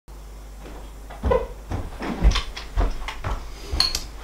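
Footsteps coming closer, about two a second, with a short clink near the end, like a spoon against a bowl.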